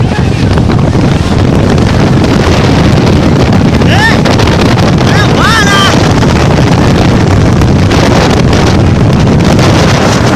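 Cyclone-force wind blasting against the microphone: a loud, steady, heavy rumble of wind noise. Short shouts from people cut through it about four and again about five and a half seconds in.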